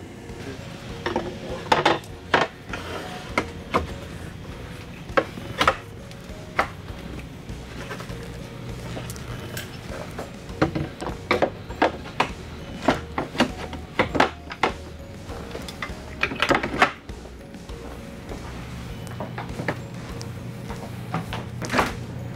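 Extension leaves being fitted into a dinette table: a scattered series of sharp knocks and clacks as the leaves are handled and slid into place, with quiet background music underneath.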